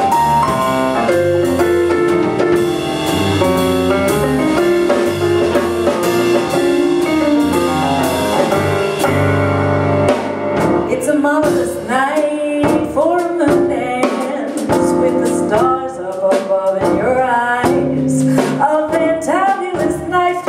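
Live blues-jazz band playing: keyboard, electric bass and drum kit. About halfway through the full band drops back and a female singer sings over sparse accompaniment.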